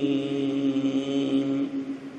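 A man's voice holding one long, level sung note in melodic Quranic recitation. It stops about one and a half seconds in, and an echo trails off.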